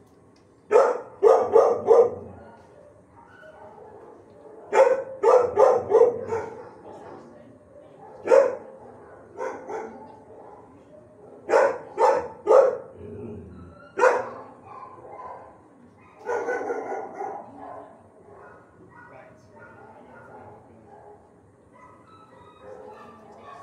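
Dogs barking in a shelter kennel, in short clusters of two to four sharp barks every few seconds, with a longer drawn-out call about sixteen seconds in.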